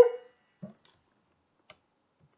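A last sung vocal note dies away in the first moment, then near silence with two faint, brief clicks.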